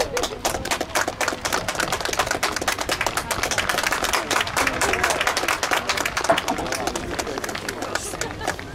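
Applause: many hands clapping in quick, dense, irregular claps, thinning out near the end.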